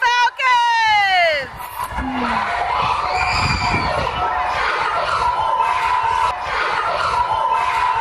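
A large crowd of elementary-school children cheering and shouting together. It opens with a loud, high call that falls in pitch over the first second and a half.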